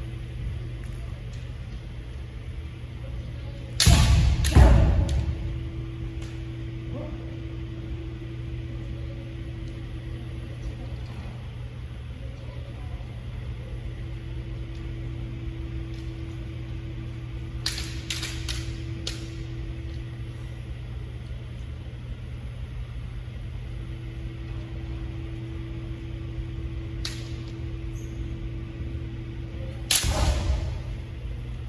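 Kendo bout: sharp clacks of bamboo shinai striking, in a short cluster midway and once more later. A loud burst of kiai shouting and striking about four seconds in and again at the end echoes in the hall, over a steady low hum.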